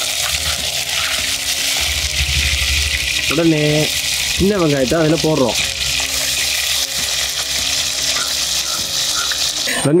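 Curry leaves and then small shallots sizzling in hot oil in a clay pot, a steady spitting hiss that cuts off suddenly near the end.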